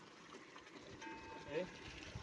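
Water pouring from a tank outlet into a partly filled trough, a faint steady splashing.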